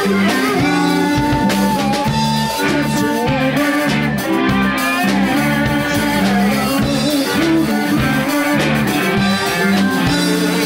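Live blues-rock band playing: electric guitars, bass guitar and drum kit, with a male voice singing. A long, bending high note is held over the first three seconds.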